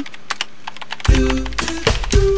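Rapid computer keyboard typing clicks, then about a second in, music with a heavy bass comes in and becomes the loudest sound.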